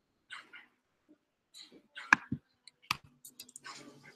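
Sparse, faint computer mouse clicks, the two sharpest about two and three seconds in, with soft faint noises between them.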